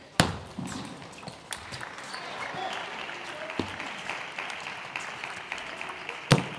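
Table tennis ball tapping on bats and table in scattered sharp clicks, the loudest just after the start, over a steady murmur of a large hall.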